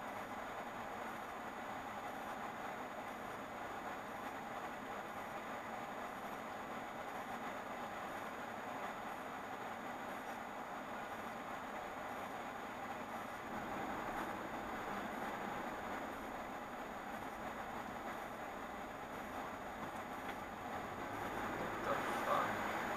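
Steady street-traffic noise heard from inside a car stopped at a light, picked up by a dash cam's microphone, swelling slightly about two-thirds of the way through.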